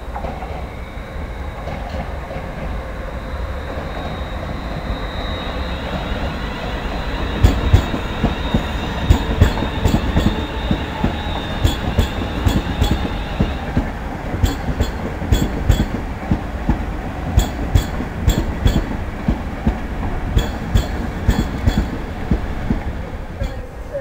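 London Midland Class 350 electric multiple unit passing close, its running noise building with a thin high whine that fades out about halfway. From about a third of the way in, its wheels clatter over rail joints and points in a long run of sharp knocks, several a second.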